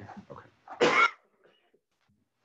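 A single loud cough from a man, about a second in, just after a brief spoken 'yeah, OK'.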